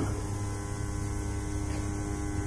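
Steady electrical mains hum from the amplified handheld microphone: a low buzz with several fixed tones that holds level through the pause.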